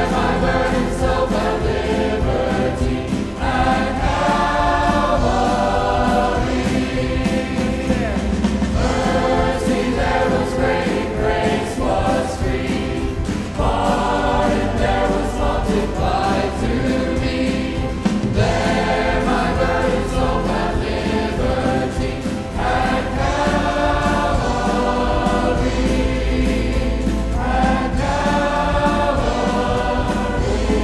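Church praise team and choir singing a worship song together, accompanied by a band with electric guitar, in continuous phrases with no break.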